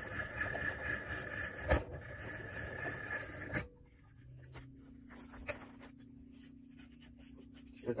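Hand-cranked pasta machine being turned to roll and cut fresh egg pasta dough: a steady mechanical whir with one sharp click near the two-second mark, then quieter handling ticks over a low steady hum.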